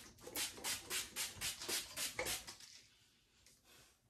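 Pump-spray bottle of Dermalogica Multi-Active Toner misting onto a face in quick repeated sprays, about four a second, that stop a little over two seconds in.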